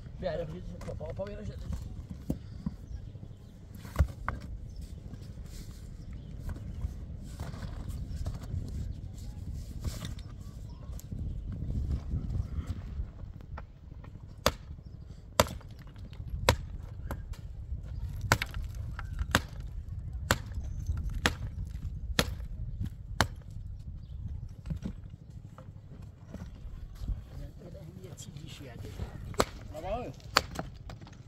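A hammer striking stone, sharp single blows, with a run of strikes about a second apart in the middle, as rough stones are knocked into shape for a stone wall. A steady low rumble runs underneath.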